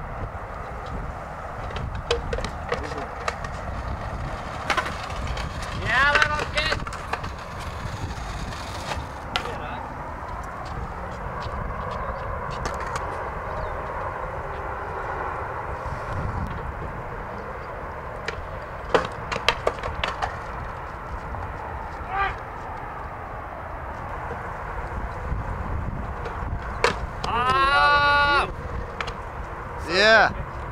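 Skateboard on concrete: sharp clacks of the board and wheels over a steady background rumble, with voices calling out twice.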